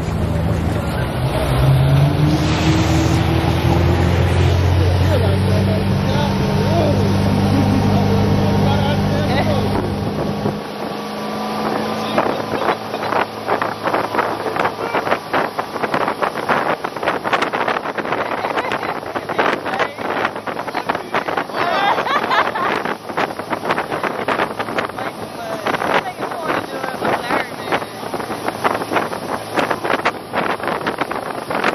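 Motorboat engine running with a steady low hum that steps up in pitch about six seconds in. From about ten seconds in, wind buffets the microphone and water rushes as the boat runs at speed towing an inflatable tube through its wake.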